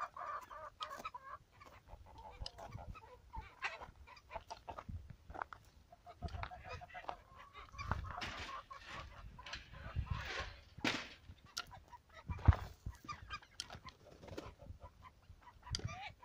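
A flock of young ducks calling as they walk along, with scattered clicks and rustling and a single sharp knock about three-quarters of the way through.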